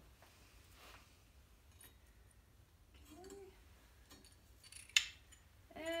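Fired ceramic pieces being handled and lifted out of an electric kiln: faint scrapes and one sharp clink about five seconds in.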